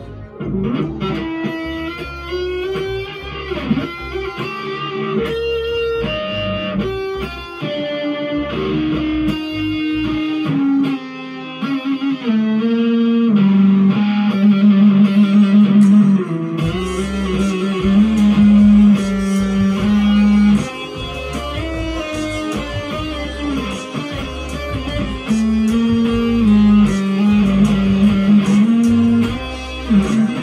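Electric guitar playing a melody of held single notes over a low bass backing. The bass drops out for a few seconds about a third of the way in, then returns.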